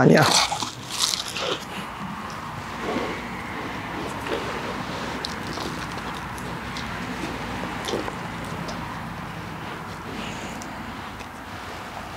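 Hands scooping loose peat-and-perlite potting mix into small plastic pots and firming mint cuttings in: soft crunching and rustling of the soil with small scattered ticks, over a steady background hiss.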